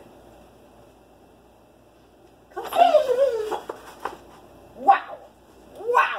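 A dog's vocal cry, loud and drawn out for about a second and falling in pitch, coming about halfway through, then two short, sharper calls near the end.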